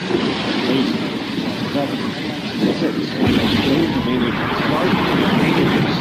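Space Shuttle main engines igniting on the pad: a deep rumble comes in about three seconds in and holds, under the launch countdown call and voices.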